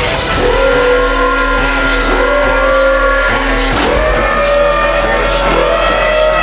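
Electronic trap music from a DJ mix, with deep sub-bass and a synth line that glides up in pitch and levels off, repeating about every second and a half.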